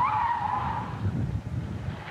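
Car tyres squealing as a large coupe corners hard, over the sound of its engine running. The squeal wavers and fades out about a second in, leaving the engine.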